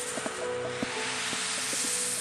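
Ambient downtempo electronic music: a held synth tone with soft ticks under a swell of hiss that grows brighter and louder.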